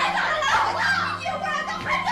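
Several voices shouting over one another in a heated family scuffle, a woman pleading "Mum, stop hitting her".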